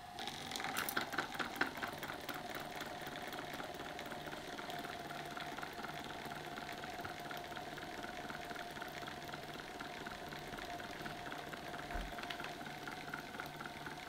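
Small electric fan motor with its blades removed, running with a steady hum. A pipe cleaner spinning on the bare shaft ticks rapidly and evenly, a little louder in the first couple of seconds.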